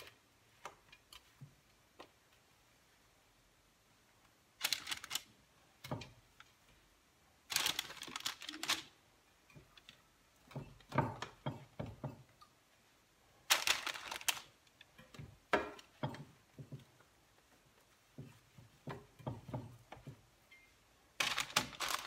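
Eggplant slices being set down one by one on a parchment-lined baking tray: short bursts of paper rustling and soft taps, about eight times with quiet between.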